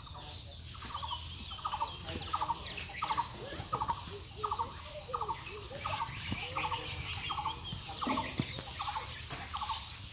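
A bird calling over and over in short, evenly spaced calls, about two a second.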